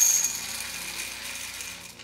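Green coffee beans pouring from a bag into a glass jar, a continuous rattling patter of hard beans hitting the glass and each other. It is loudest at the start and slowly tails off as the stream thins.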